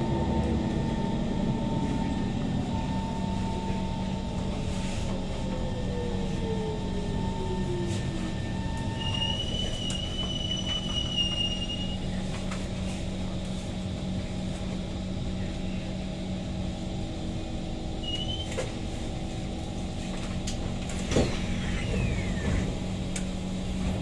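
Kawasaki C151 metro train braking to a stop: the traction motor whine falls in pitch over the first several seconds and dies away, leaving a steady low electrical hum while the car stands. A high electronic tone sounds for a couple of seconds near the middle, a short rising chirp follows later, and a few knocks with a falling slide come near the end as the doors open.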